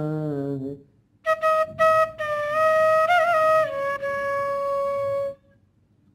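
A man's voice sings a last drawn-out syllable. About a second in, a bamboo bansuri flute plays a short phrase: a few quick tongued notes, a brief ornament in the middle, then a step down to a lower note that is held steadily before stopping near the end.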